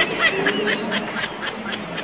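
A woman laughing in a quick run of short, high-pitched bursts, about four a second.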